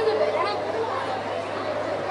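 Indistinct voices talking, more than one at once, over a steady low hum.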